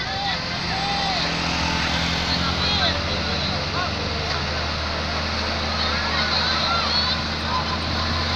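A loaded diesel dump truck's engine labouring up a steep climb, a steady low drone that grows stronger about halfway through as the truck comes closer. Onlookers' voices call out over it.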